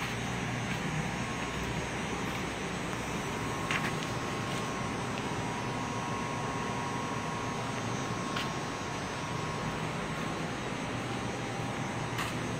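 Steady background hum and hiss of a repair shop, with a faint steady high whine and two light clicks, about four and eight seconds in.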